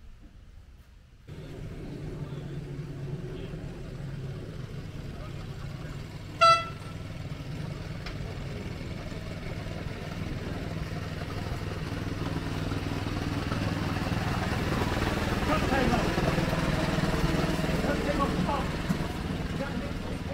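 Miniature railway train pulling away about a second in and running along the track with a steady rumble that grows louder; its horn gives one short toot about six seconds in.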